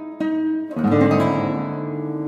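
Classical guitar playing plucked notes, then a loud strummed chord just under a second in that rings on.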